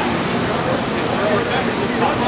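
Steady machine noise from a running wood-panel finishing line, its brushing machine's air nozzles and dust collector working, with indistinct voices in the background.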